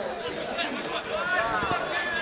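Indistinct voices calling out and chatting, with one drawn-out shout about halfway through.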